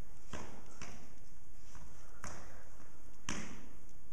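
Shoes thudding and scuffing on a wooden stage floor as a person dances, a few separate, irregular knocks over steady room noise.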